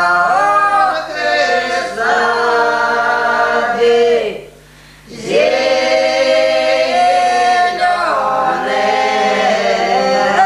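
A group of elderly village women singing a traditional Russian folk song unaccompanied, with long drawn-out notes. The singing breaks off briefly for breath about four and a half seconds in, then resumes.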